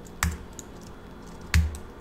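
A few separate computer key presses: a sharp click about a quarter second in and a louder one with a low thud about a second and a half in, with fainter taps between.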